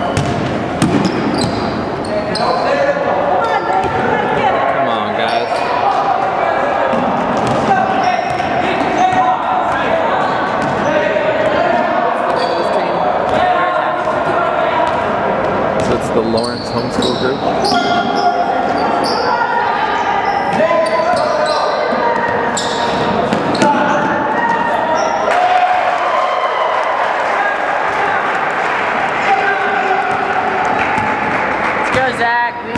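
Basketball being dribbled on a hardwood gym floor, repeated bounces ringing in a large, echoing gym, over steady voices from players and spectators.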